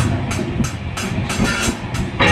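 Live rock band: drums keep a steady beat with cymbal strokes about three times a second over bass and guitar.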